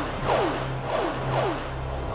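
Synthesized title-sequence sound: a quick falling swoop repeating about twice a second, four times, over a low steady drone.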